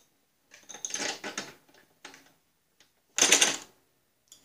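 Wheel hub being wiggled and pushed onto the splined axle shaft of a Snapper rear-engine rider by hand: scattered scraping and clicks of the parts working together, with one louder brief rasp about three seconds in.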